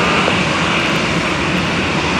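Boeing 737 jet engines running steadily at low power while the airliner taxis, an even rush of engine noise.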